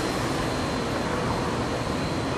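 Steady, even hum of distant city traffic.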